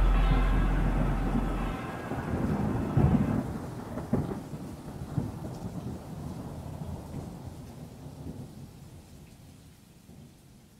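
The song's closing bass fades out in the first two seconds, leaving steady rain and rolling thunder. A few louder thunder cracks come about three, four and five seconds in, and the storm dies away toward the end.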